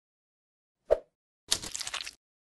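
Sound effects of an animated logo intro: a single short pop about a second in, then a grainy, hiss-like burst lasting about half a second.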